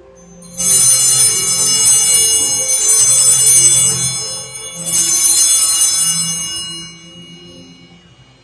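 Altar bells (sanctus bells) rung twice at the elevation during the consecration. Each ringing is a bright, high, shimmering peal that dies away over a couple of seconds: one starts about half a second in, the second about five seconds in.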